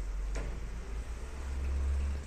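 Fujitec Exceldyne elevator doors sliding open with a steady low rumble that swells and stops at about the two-second mark, with a faint click near the start.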